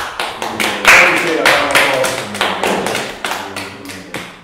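A small group clapping, the claps heard one by one, with excited shouting and cheering that is loudest about a second in.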